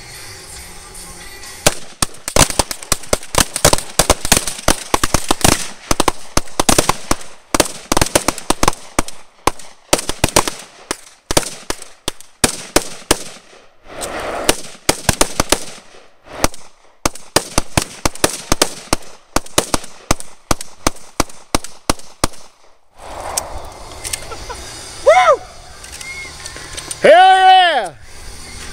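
A volley of gunfire from a line of shooters with shotguns, .22 rifles, pistols and an M-4 carbine: many shots overlapping fast for about twenty seconds, then stopping. Near the end come two loud rising-and-falling whoops.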